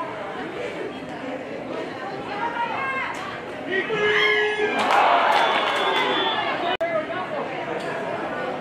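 Players' and sideline voices chattering and calling out across a flag football field, with a louder burst of shouting about five seconds in, during a pass play.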